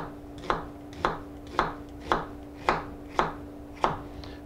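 Chef's knife slicing down through a halved onion onto a plastic cutting board in a steady series of about eight crisp cuts, roughly two a second: the lengthwise cuts for dicing an onion.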